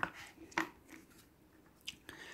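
A few faint clicks and knocks of hard plastic parts being handled and tightened on an electric HVLP paint spray gun, three short taps spread over two seconds.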